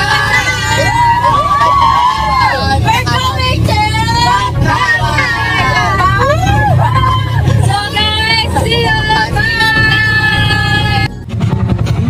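Several young voices shouting and calling out excitedly over the steady low rumble of the vehicle they are riding in. The voices change briefly near the end.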